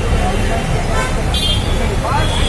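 Bus engine running with a low rumble under a crowd of people talking. A brief high toot sounds about halfway through.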